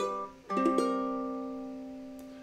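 Ukulele playing the song's closing chord: the previous chord dies away, then a final chord is strummed about half a second in and left to ring, fading slowly.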